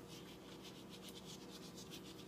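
Salt sprinkled by hand over the skin of a raw turkey, a faint, steady sound of falling grains.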